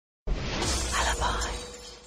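A sudden crash-like sound effect with music, starting abruptly about a quarter second in and fading away over the following second and a half.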